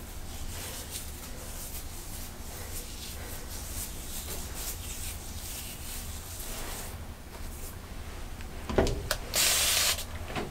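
Fingers working through damp hair, a faint rustling rub. Near the end comes a knock and then a short hiss, like one spritz of a spray bottle.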